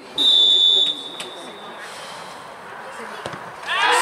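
Referee's whistle blown once for the penalty kick, a single shrill steady note of under a second that fades away. Near the end, players' and spectators' voices break into shouting as the ball goes into the net.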